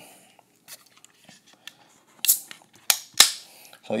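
Aluminium beer can being cracked open: after a couple of seconds of faint handling ticks, a short hiss, a click and a sharp crack of the pull tab come near the end.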